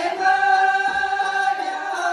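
A group of women singing a Tibetan folk song together, holding one long note, with a plucked Tibetan lute (dranyen) faintly accompanying.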